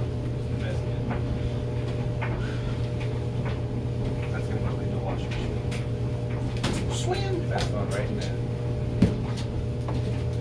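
Clothes dryer running with a steady hum. In the second half a plastic laundry basket knocks and clothes rustle, with one sharper knock near the end.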